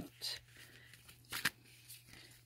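Paper pages of a small handmade journal handled and turned, giving a few brief soft rustles and a short crisp paper snap about one and a half seconds in.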